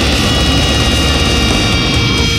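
Technical death metal: a dense, steady wall of heavily distorted guitars and drums.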